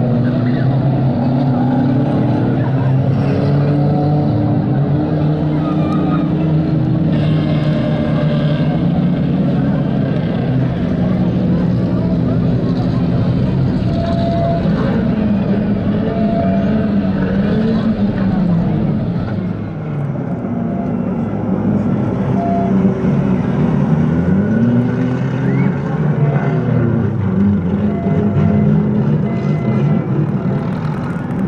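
Several car engines idling and revving on the track, their pitch rising and falling now and then, with the sound dropping briefly about twenty seconds in.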